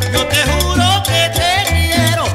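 A chicha (Peruvian psychedelic cumbia) band playing: a bending electric guitar melody over a bass line and cumbia percussion.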